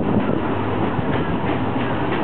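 Ex-Japanese 12-series passenger coach running along the track, heard at its open window: a steady rolling rumble of the wheels on the rails.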